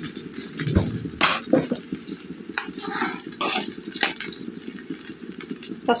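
A steel spoon clinking and scraping against an aluminium kadai of fried rice: several short sharp clinks over a low steady rustle.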